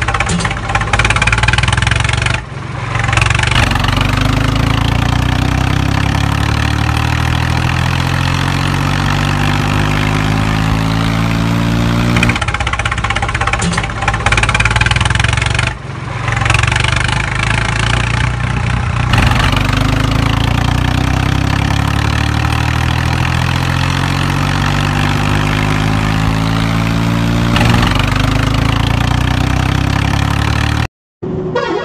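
Tractor engine sound effect running and revving. Its pitch climbs slowly over several seconds and then starts over, a few times, with brief drops near the start and about halfway.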